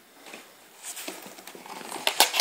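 Cardboard packaging box being handled on a table: quiet at first, then a few light taps and scuffs in the second half as it is shifted and gripped.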